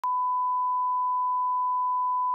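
Broadcast line-up test tone: a single steady pure tone at about 1 kHz, sent with a TV channel's colour bars while the channel is off air for maintenance. It switches on with a brief click at the very start.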